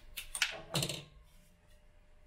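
Rustling of cut flower stems and leaves being picked up and handled, with several sharp clicks in the first second.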